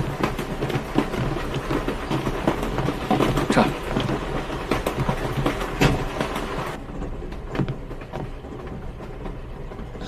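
Moving train's carriage running, a steady rumble with irregular rattles and knocks. About seven seconds in the sound turns duller and muffled.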